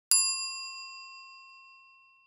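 A single bright, bell-like ding, struck once and ringing down over about two seconds, the higher overtones fading first.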